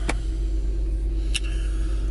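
Steady low hum of an idling car engine heard inside the cabin, with a sharp click just after the start and a fainter click at about one and a half seconds.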